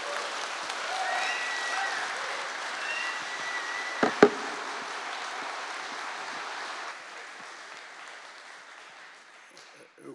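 Audience applauding, dying away over the last few seconds. Two sharp knocks about four seconds in are the loudest sounds.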